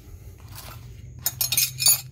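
Metal tools clinking against each other several times in quick succession, loudest near the end.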